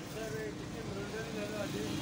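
A faint voice in the background, its pitch wavering, over a low steady hum and rumble.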